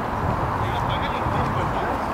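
Distant voices of players calling out across an outdoor football pitch, over steady background noise with a low rumble.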